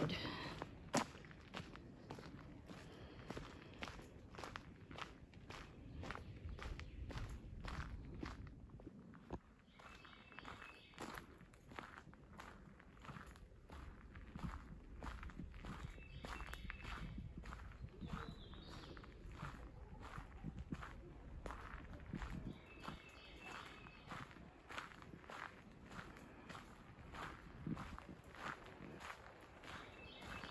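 Footsteps on a gravel trail at a steady walking pace, about two steps a second.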